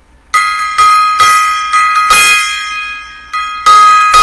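Small brass gong struck about seven times in quick succession. Each strike sets off a bright, steady ringing tone that carries on between hits.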